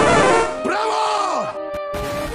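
Loud edited sound-effect montage. A dense, loud burst of sound fades about half a second in. Then a drawn-out voice-like sound rises and falls in pitch for about a second before cutting off abruptly, followed by two brief clicks.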